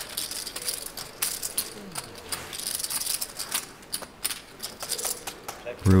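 Poker chips clicking and rattling irregularly as players handle their stacks at the table.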